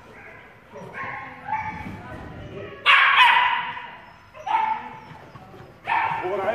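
Small dog barking while it runs an agility course: a few sharp barks, the loudest about three seconds in, with fainter yips before them.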